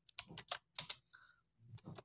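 Typing: about five separate, irregularly spaced key clicks as text is entered letter by letter.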